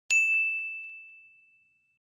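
Notification-bell ding sound effect for a subscribe-button click: one clear high chime, struck once, that rings on as a single tone and fades away over about a second and a half.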